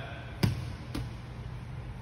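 A rubber playground ball thrown against a gym's block wall. There is a sharp thud as it strikes the wall about half a second in, then a softer knock about half a second later as it comes back to be caught.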